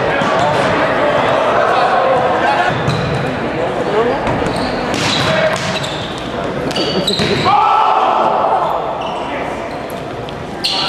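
A volleyball being struck during a rally, with sharp hits echoing in a gymnasium over the chatter and calls of players and spectators. A drawn-out shout comes about three-quarters of the way through.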